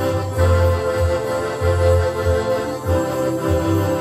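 Electronic keyboard being played: sustained chords held over a bass line that pulses in repeated beats.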